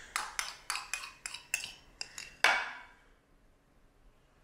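Metal spoon clinking against a ceramic bowl while sauce is scooped out: a quick run of about ten light clinks with short ringing, the last one, about two and a half seconds in, the loudest.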